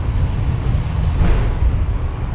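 Takao Tozan Railway funicular cable car running uphill, heard from inside the car: a steady low rumble, with a brief swishing rise and fall just over a second in.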